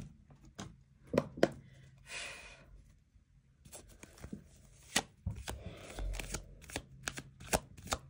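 A tarot deck being shuffled by hand. A couple of sharp taps and a short swish of cards come first, then from about halfway through a quick run of card clicks and rustle as the cards are passed from hand to hand.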